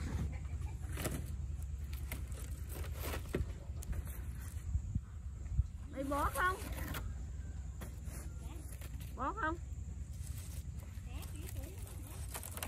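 Thin sheets of dry wood veneer being picked up and stacked by hand, with scattered light clatters and knocks over a steady low rumble.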